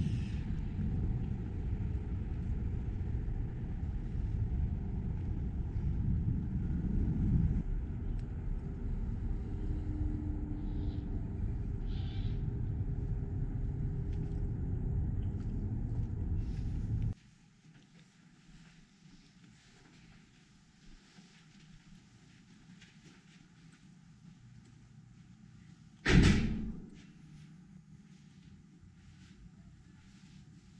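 A steady low outdoor rumble cuts off suddenly a little past halfway, leaving quiet room tone. Near the end comes a single loud thud with a short ring-out, a door swinging shut.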